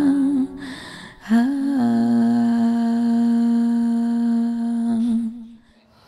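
A voice humming long, held notes as soundtrack music. One note wavers and ends in the first half second; after a short gap a new note bends up, settles, and is held steady for about four seconds before fading out near the end.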